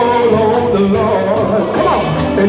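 Live gospel music: a male vocal group singing held, gliding notes over a band of drum kit and keyboard, with cymbal strokes keeping a steady beat.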